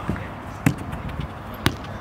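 Two sharp thuds of a football being kicked, about a second apart, over low background noise.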